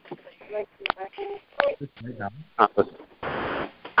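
Choppy, broken-up voices over a telephone conference line, cutting in and out in short fragments, then a short burst of line hiss near the end.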